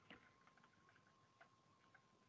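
Near silence, with a few faint clicks of computer keys being typed, the first just after the start the loudest, over a faint steady high tone.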